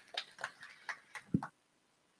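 Faint scattered hand claps from a small audience, a few a second, with a dull thump about a second and a half in, after which the sound cuts off abruptly.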